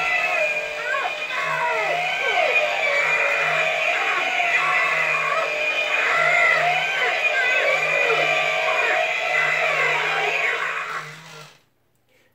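Battery-powered hanging Buzzsaw animatronic Halloween prop running its activation cycle. A recorded soundtrack of a man's screams and moans plays through its small built-in speaker over a low hum that pulses on and off. It cuts off near the end.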